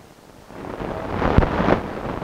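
Low rumbling noise on the microphone that swells up about half a second in, with a sharp knock a little after halfway.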